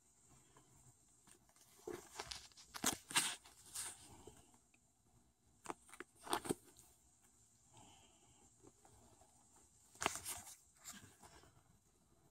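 Faint scuffing and rustling of fabric and carpet, in short bursts about two to four seconds in, around six seconds and again around ten seconds, with near quiet in between.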